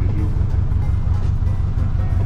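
Small fishing boat's engine running with a steady low rumble.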